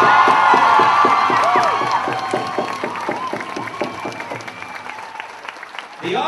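A large crowd applauding and cheering, with shouts and whoops in the first couple of seconds, the clapping then dying down steadily toward the end.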